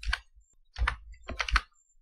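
Computer keyboard being typed on, about four separate keystrokes with short gaps between them.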